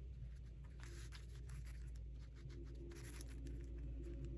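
A small paintbrush scratching and dabbing on paper in quick, faint strokes, with some paper rustling, over a low steady hum.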